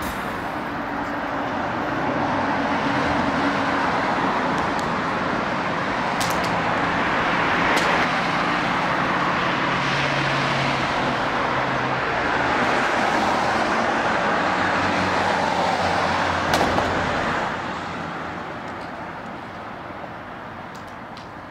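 Street traffic going by: a steady rush of car tyres and engines that swells and eases as vehicles pass, dropping off near the end. A few small clicks stand out over it.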